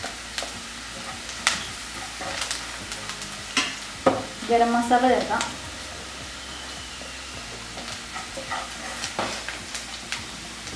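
Chopped onion, garlic and ginger sizzling in oil in a nonstick pan, with a spatula stirring the masala and clicking and scraping against the pan several times.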